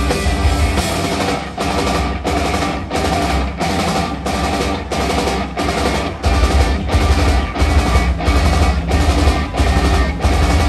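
Live rock band playing an instrumental passage at full volume: drum kit keeping a steady beat under distorted electric guitars and bass. The deep bass drops back for a few seconds and comes in heavily again about six seconds in.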